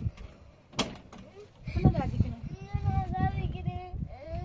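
A sharp click about a second in, then voices, with one long drawn-out vocal note of steady pitch near the end.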